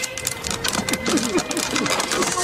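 Fast, even clatter of wooden and bamboo ladders knocking and being scrambled up, with short voice-like cries over it from about two-thirds of a second in.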